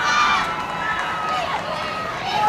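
Several children's voices shouting and calling out at once, their pitch rising and falling, over a steady outdoor hiss.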